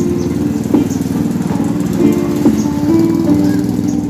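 Background music with held notes over the running of a quad bike's small engine, a fast low pulsing.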